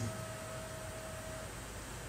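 Pause in a lecture recording: faint steady background hiss and low hum of the room and microphone, with a faint thin tone that stops about one and a half seconds in.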